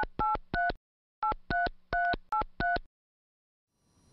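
Mobile phone keypad sounding touch-tone dialing beeps as a number is keyed in: three quick two-note beeps, a short pause, then five more.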